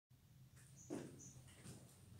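Near silence: room tone with a faint steady low hum and a soft, brief noise about a second in.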